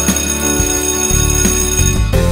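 A bell ringing steadily for about two seconds, stopping just before the end, over background music: the signal to stop and get ready for the next trick.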